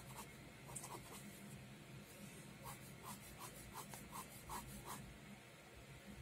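Pen sketching on sketchbook paper: faint scratchy strokes, a few near the start and then a quick run of short strokes, about three a second, in the second half.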